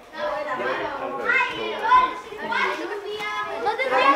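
Children's voices talking and calling out, short phrases one after another.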